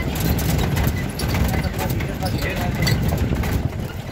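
Steady low rumble of a vehicle on the move, with indistinct voices in the background and scattered light knocks.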